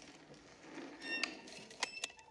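Faint cartoon soundtrack: a few light clicks, a brief ringing tone about a second in, and a sharp click near the end.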